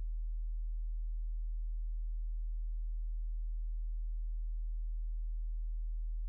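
A steady low hum: a single unchanging low tone with no other sound over it.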